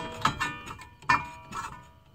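Metal clinks from a brake caliper and its pads knocking against the brake rotor and hub as the caliper is worked off the rotor. About four clinks, each with a brief metallic ring, the loudest about a second in.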